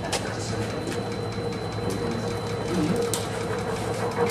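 Shake table running with a steady mechanical hum while it shakes a balsa-wood tower model, with a few sharp clicks. People laugh at the start.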